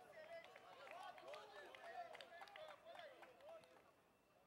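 Faint, overlapping shouts and calls of several footballers during play, with a few short sharp knocks among them.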